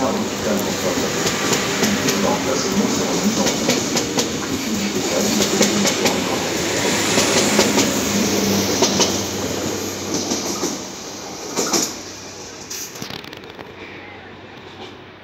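Double-deck Z22500 electric multiple unit passing close by at speed: a steady rush of wheels on rail with a rapid clatter over the rail joints and a low hum. The sound fades after about ten seconds as the last cars go by, with one sharp knock shortly after.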